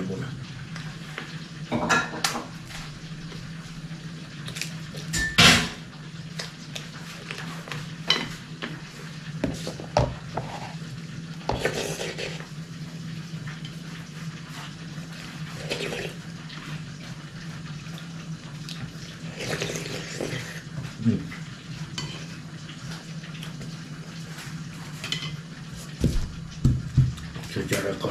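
Metal spoon clinking and scraping in a metal pot as soup is eaten from it, in scattered single knocks every second or few seconds, over a steady low hum.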